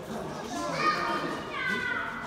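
Young children talking and calling out, their high voices rising and falling, with other visitors' chatter behind.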